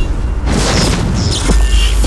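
Cinematic sound effects for a speedster's lightning arrival: a deep sustained boom-rumble with rushing whooshes swelling over it, layered with a music score.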